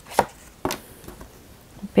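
An oracle card drawn from the deck and laid down on a cloth-covered table: two sharp taps about half a second apart, the first the louder, then a few faint ticks.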